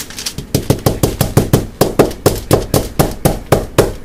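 Fingers tapping rapidly on the foil-covered table around a clay-walled mold of freshly poured plaster of Paris, about six sharp taps a second, to shake air bubbles up to the surface of the wet plaster.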